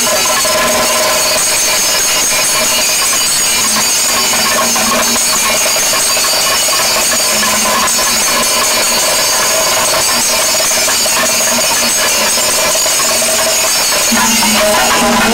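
Chenda, the Kerala cylindrical drum, beaten with sticks in a fast, dense, continuous roll that blurs into one steady loud roar.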